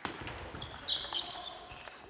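Table tennis rally: a few sharp clicks of the celluloid ball off bats and table, with brief high squeaks around the middle, over hall background noise.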